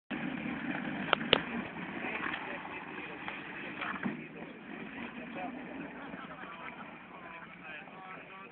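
A vehicle engine runs steadily as an SUV tows a car along a dirt track on a strap, fading after about four seconds. There are two sharp knocks a little over a second in.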